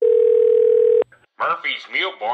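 A single steady electronic tone, like a telephone line tone, held for about a second and cut off sharply, followed by a man's voice.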